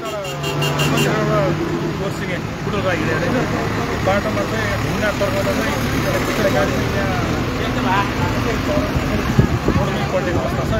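Voices talking over the steady hum of a large road vehicle's engine running close by.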